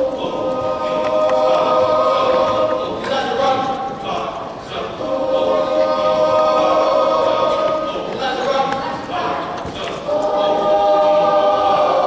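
Large mixed choir singing long held chords in three phrases, with short breaks between them.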